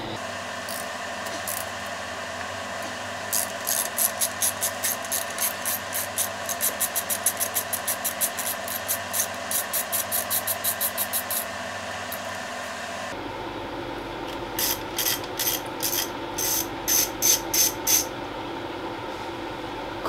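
Small hand ratchet clicking as it unscrews pit-bike engine mounting bolts. A long run of quick, even clicks, about five a second, comes a few seconds in; after a break a second, slower run follows near the end.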